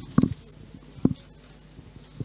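Two dull low thumps about a second apart: handling noise on a handheld microphone as it is gripped and passed.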